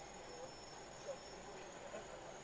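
Faint background noise inside a car stopped in traffic, with a thin, steady, high-pitched whine over it.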